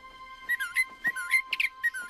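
Cartoon small red bird chirping: a quick string of short whistled chirps, each dipping and then rising in pitch, about four a second, starting about half a second in. A faint held music tone sits underneath.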